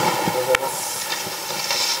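Steady hiss of room and microphone noise in a pause between speech, with a single sharp click about half a second in.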